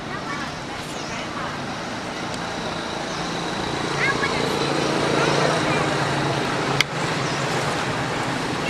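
A motor vehicle engine running nearby, a steady hum that grows louder about three seconds in, with a sharp click near the end and a few short high chirps.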